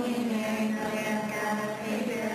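A congregation reciting the rosary's response prayer in unison on a nearly steady pitch, so that it sounds like a monotone chant.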